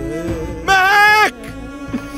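Sad drama score with sustained string notes, broken a little after half a second in by a loud, wavering high vocal note that lasts about half a second.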